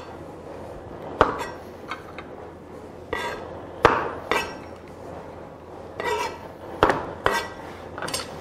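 Chef's knife rough-chopping mushrooms on a plastic cutting board: a series of irregularly spaced sharp knocks as the blade hits the board.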